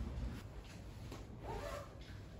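Ballpoint pen scratching across paper in short strokes while signing a form.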